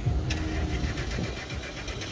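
A car engine running close by, a steady low rumble with an even, rapid ticking pulse.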